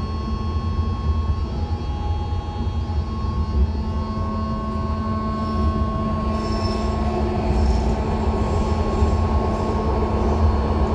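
Inside a moving BART C1 rapid-transit car: a low rumble of the wheels on the rails under a steady electric propulsion whine made of several tones that step in and out. From about six and a half seconds in, brief high-pitched wheel squeals recur about once a second.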